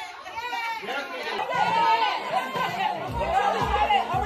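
Overlapping voices of a party crowd chattering, with music underneath; a heavy bass beat comes in about three seconds in.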